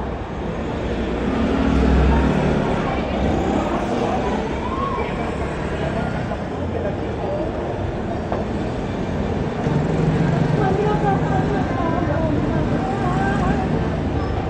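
Street traffic: vehicles and motor scooters passing, with the rumble swelling about two seconds in and again around ten seconds, under indistinct voices.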